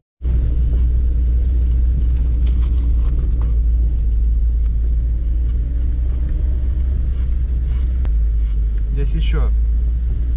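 A car driving slowly on a rutted dirt road, heard from inside the cabin: a steady, loud low rumble of the engine and tyres that starts abruptly just after the beginning.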